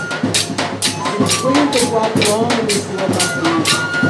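Drums beating a steady rhythm of about three to four strokes a second, with voices singing over them: live music for a folk dance.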